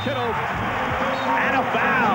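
A man's voice calling the play, raised and excited, over the steady noise of a basketball arena crowd as a dunk goes in.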